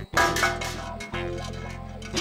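A pebble landing in a metal bucket with a sharp clink, part of a cartoon sound effect. It is followed by a short, bright musical chord that is held to the end.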